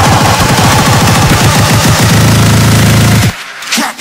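Turntable scratching and cutting: a percussive sample chopped by hand on the record and mixer into a fast run of hits, with a low bass note held under it in the second half. It cuts out sharply about three and a quarter seconds in, then the beat comes back at the very end.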